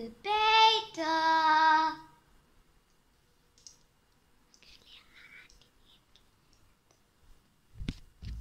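A child's voice sings two long held notes in a sing-song call, the second lower, in the first two seconds. After that it is quiet apart from faint rustling, and there is a sharp knock near the end.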